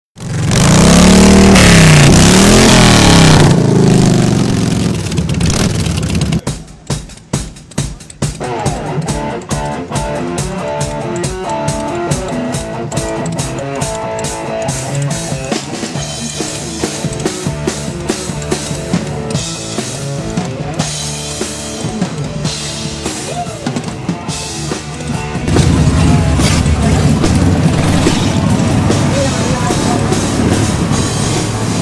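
A motorcycle engine revving up and down twice, then live rock music with a drum kit keeping the beat. Near the end a louder low rumble comes in under the music.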